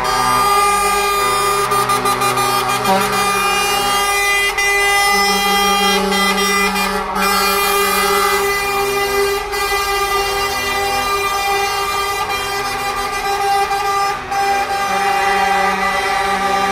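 Air horns of several lorries sounding together in long, overlapping held tones as the trucks drive slowly past, over their engines.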